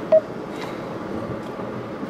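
A single short electronic button beep just after the start, over the steady road and engine noise inside a moving car's cabin.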